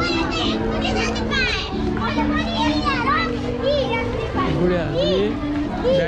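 Children's high voices calling and chattering over background music of long held low notes that step in pitch every second or so.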